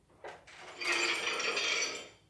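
A metallic ringing, jingling noise lasting about a second, with a faint click just before it.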